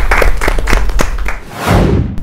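A few people clapping by hand, a scattered run of separate claps. About a second and a half in, the clapping gives way to a quick whoosh that rises in pitch: a transition sound effect.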